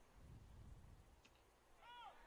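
Mostly near silence with a faint low rumble in the first second; near the end a faint, brief high-pitched call that rises and falls in pitch.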